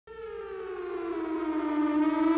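A siren tone that rises from silence, growing steadily louder while sliding slowly down in pitch.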